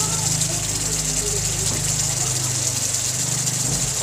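Steady low electrical hum of an induction cooktop running under the wok, with a faint high hiss of coconut milk simmering.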